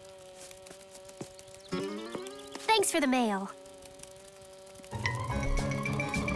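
Cartoon sound effect of a flying bug's wings buzzing in a steady hum. About two seconds in, a short vocal sound from the character glides up and then falls away. Louder music comes in near the end.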